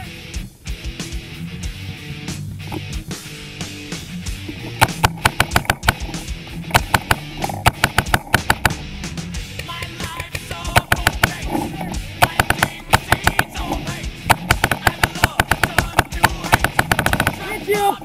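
Paintball markers firing in rapid bursts of sharp shots from about five seconds in, over a bed of rock music.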